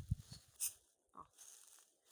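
Footsteps through dry grass and forest leaf litter while the camera is carried: a low handling rumble, then a short dry rustling crunch a little past half a second in.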